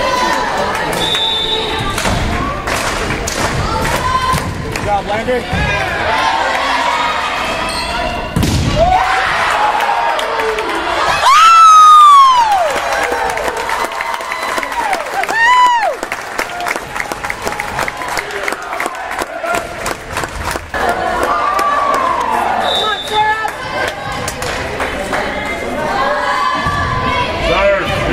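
Volleyball game sounds in a gym: ball hits and thuds on the court amid crowd and player cheering and shouting. The loudest moment is one long cheer about eleven seconds in, with shorter shouts after it.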